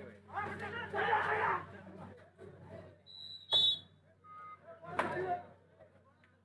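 Voices shouting, then a short, high whistle blast about three and a half seconds in, typical of a kabaddi referee's whistle. Another loud shout follows near the end.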